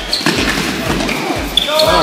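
A few sharp knocks of tennis balls being hit and bouncing, over the indistinct chatter of several people.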